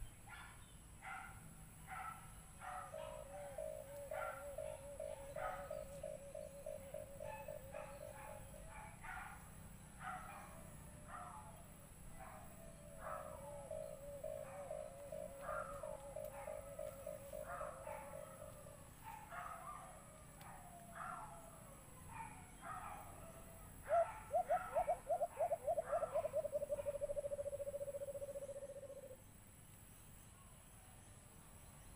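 White-eared brown dove calls: runs of rapid, low pulsed cooing notes, the loudest run starting about 24 seconds in and slowing and fading over about five seconds, with short higher notes repeating about twice a second.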